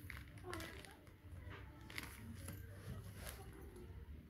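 Faint rustling and crinkling of small plastic zip-lock bags being handled, in a series of light scattered rustles.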